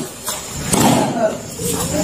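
Indistinct voices of several people in a martial-arts training group, over a steady low background rumble.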